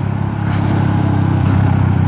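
Carbureted 250cc engine of a Rusi Classic 250 motorcycle running steadily while riding, heard from the rider's position with road and wind hiss over it.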